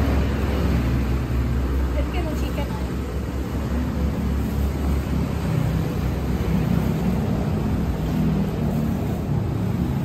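Steady low rumble of outdoor background noise, with faint voices now and then.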